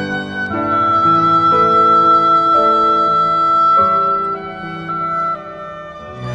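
Clarinet holding one long high note over grand piano chords that change about once a second; the long note ends shortly before the end.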